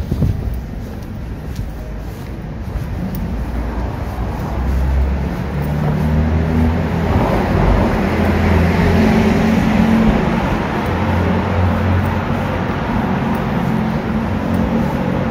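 A motor vehicle's engine running close by in the street, growing louder toward the middle with a rushing sound at its loudest, then easing off slightly.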